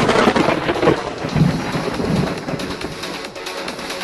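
A channel intro's thunder sound effect: a sudden loud crack at the start, then rumbling and a rain-like hiss, under music with a few deep thumps.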